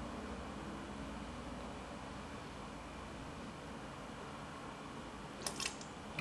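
Quiet steady background hum, then a couple of short plastic clicks near the end as the red tap of a 5-litre mini keg of lager is twisted open.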